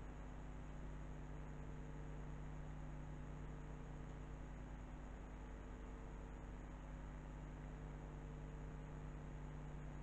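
Quiet room tone: a steady low hum with a faint even hiss, unchanging throughout.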